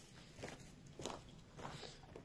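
Three soft footsteps on dry grass and ground, about two-thirds of a second apart.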